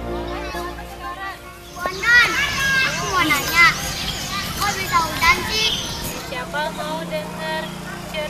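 A group of young children's high voices, many calling out and chattering at once, loud and excited, starting about two seconds in. Background music fades out in the first second.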